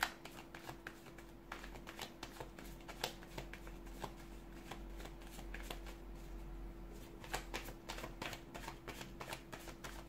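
A deck of tarot cards being shuffled by hand: a run of quick, crisp clicks as the cards slap together. They thin out in the middle and pick up again about seven seconds in.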